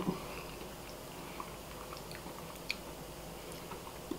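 A person quietly chewing a mouthful of food, with a few faint small clicks from the mouth.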